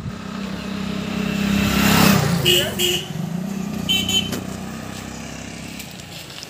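A road vehicle's engine runs steadily, its pitch rising and then falling about two seconds in, with street noise around it. Short high-pitched sounds come twice, about two and a half and four seconds in.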